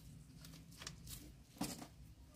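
Faint handling sounds: a few soft clicks and rustles of hands working the stems and leaves of a potted plant, with a slightly louder short knock near the end.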